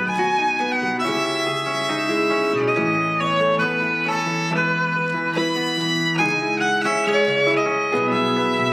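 Live instrumental music: a violin plays a melody with long held notes over chords from a digital piano and an electric guitar.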